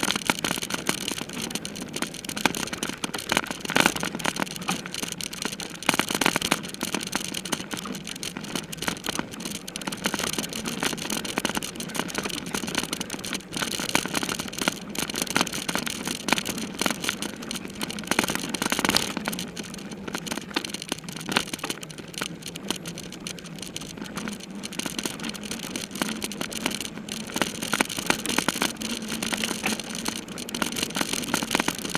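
Mountain bike ridden over a bumpy dirt trail: continuous rattling and clattering over the rough ground, with tyre and wind noise.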